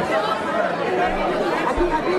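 Crowd chatter: many people talking at once around a politician, with no single voice standing out.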